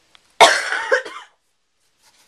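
A girl coughing once, loud and sudden, about half a second in and lasting under a second.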